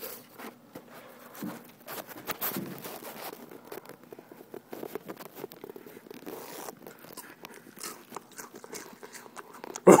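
Cheez-It crackers being chewed, a run of irregular crisp crunches and crackles.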